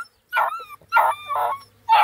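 Black and Tan Coonhound puppies giving four short yelps in quick succession.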